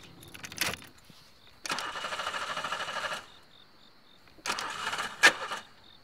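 A car's starter cranking the engine in two tries, one of about a second and a half and a shorter one ending in a sharp click, without the engine catching: the car will not start. Crickets chirp steadily throughout.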